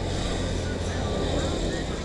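Motorcycles passing on the road, a steady engine drone that swells slightly mid-way, with a faint voice over it.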